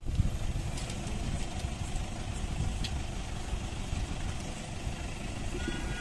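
A vehicle engine idling steadily: a low, even rumble with outdoor background noise.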